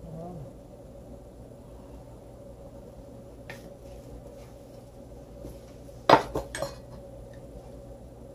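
A metal kitchen knife set down on a marble countertop: two or three sharp clinks about six seconds in, with a faint tick a little earlier, over a faint steady hum.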